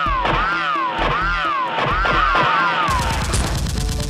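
A wavering tone that rises and falls about every 0.7 s, then from about three seconds in a rapid-fire burst of gunfire sound effect.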